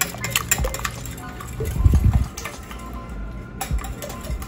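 Wire whisk clicking against a glass mixing bowl as egg batter is beaten, mostly in the first second, over faint background music, with a low thump about two seconds in.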